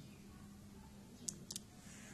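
Two quick faint clicks, about a second and a half in, of a marker tip striking the whiteboard as writing starts, over quiet room tone.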